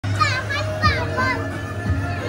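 Young children calling out in high voices, twice within the first second or so, over steady background music.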